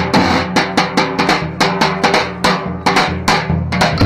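Large double-headed folk drum (dahol) beaten in a fast, even rhythm, several deep booming strokes a second.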